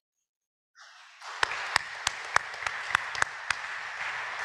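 Audience applause starting about a second in. A few sharp single claps stand out above the rest.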